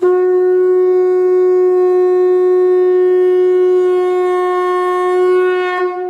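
One long, steady blown note from a horn-like wind instrument, starting suddenly and fading out near the end.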